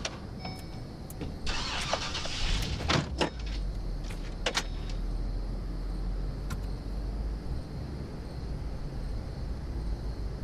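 GMC Sierra pickup starting up: a burst of engine noise about a second and a half in, then a low, steady engine rumble as the truck pulls away. Several sharp knocks come in the first few seconds.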